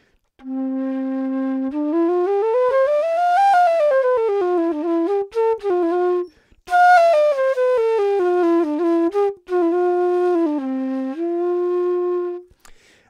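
Alon Treitel bamboo bansuri, a Hindustani F flute, played solo. It starts on a held low note, climbs in steps through the scale about an octave and comes back down, stops briefly, then runs down again from the top and settles on held notes.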